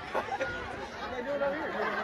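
Crowd chatter: many voices talking at once, overlapping, with no single voice standing out.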